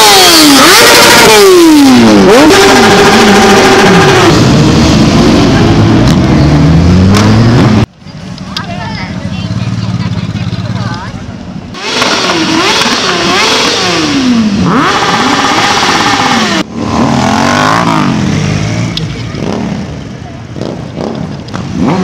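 Several motorcycle engines revving, their pitch climbing and falling again and again as the throttles are blipped. The sound is loudest at the start and breaks off abruptly a few times.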